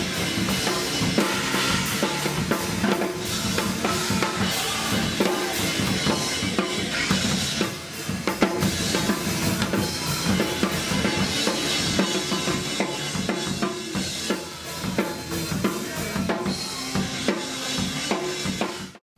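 A drum kit recording and a band recording playing back together at full level: a cacophonous mix of hard-hit drums over the band's music. The two tracks sum too loud, so the mix clips and distorts.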